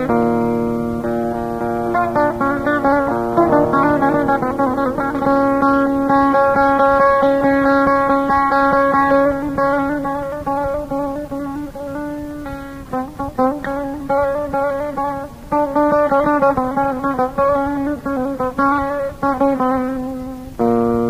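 Instrumental passage of a Kurdish folk song: a plucked string instrument plays the melody in long held notes, with no singing. It drops a little softer for a few seconds past the middle, then comes back up.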